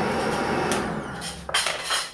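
Electric countertop blender motor running on a milkshake, then winding down about a second in as it is switched off at the wall socket, with a few sharp knocks near the end.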